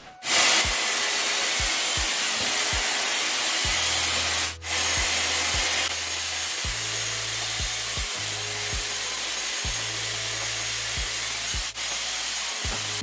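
Dyson hot-air styler with a round brush attachment blowing steadily as hair is dried and styled around the brush. It cuts out briefly about four and a half seconds in, then runs on.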